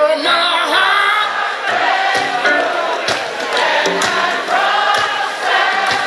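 Live band playing with many voices singing together in sustained notes over a steady drum beat.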